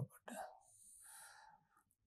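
Near silence, with a few faint, short hisses.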